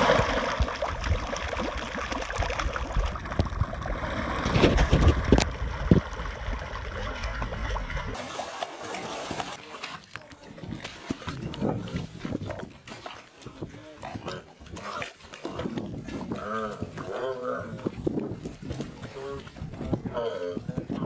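A mass of catfish thrashing in thick, watery mud: a dense, wet splashing churn with a few sharp slaps for the first eight seconds. The sound then changes suddenly to quieter wet mud sounds with short vocal calls in the second half.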